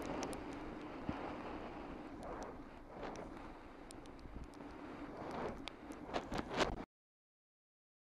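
Wind buffeting the microphone of a bicycle-mounted camera while riding, over steady road noise. Several sharp knocks and clicks come near the end, the loudest at about six and a half seconds, and then the sound cuts off suddenly.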